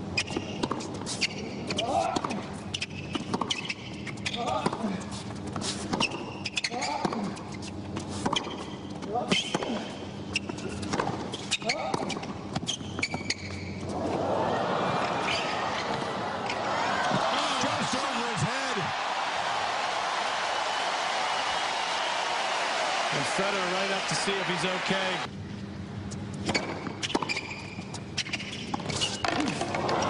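Tennis ball struck by rackets and bouncing on a hard court during a rally, then a crowd applauding and cheering for about ten seconds from about fourteen seconds in, followed by more scattered ball bounces and hits near the end.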